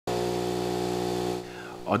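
A small electric motor running with a steady, even hum, cutting off about one and a half seconds in.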